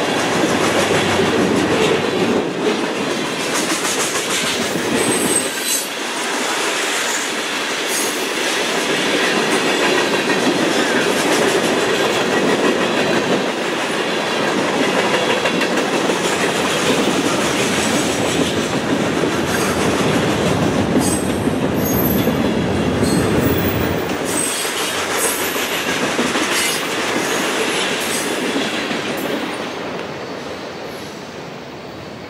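Freight cars of a passing train rolling through a grade crossing at speed: a steady rumble of steel wheels with rapid clicking over the rail joints. The sound fades in the last couple of seconds as the tail of the train passes.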